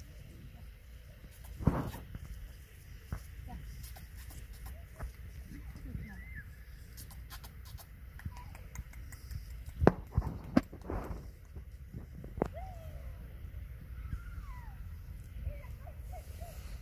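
Black goats eating apples from a hand in an open meadow: a few sharp clicks and knocks of chewing and jostling, about two seconds in and again around ten to twelve seconds, over a steady low rumble of wind on the microphone.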